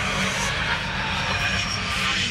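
A rushing, airy whoosh that swells up and then fades away, over a low sustained drone.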